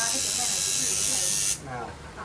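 Electric tattoo machine running with a steady high buzz while tattooing skin, cutting off suddenly about one and a half seconds in as the machine is lifted away.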